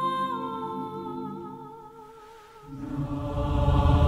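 A solo soprano holds a sung note with vibrato over a sustained low choir chord, steps down a tone and fades away. Near the end the full choir and low drums swell in a loud crescendo.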